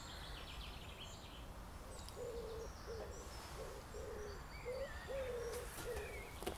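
A wood pigeon cooing in a run of low, soft notes, starting about two seconds in, with faint chirps of small songbirds.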